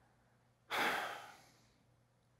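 A man's single audible breath, sudden at the start and fading out within under a second, about a third of the way in.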